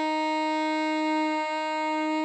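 Alto saxophone holding a steady long tone on written C, sounding concert E-flat at about 311 Hz, right on pitch.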